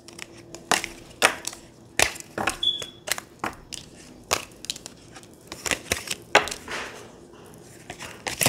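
Tarot cards being gathered and handled: an irregular string of crisp clicks, snaps and rustles of card stock. A brief high tone sounds once about three seconds in.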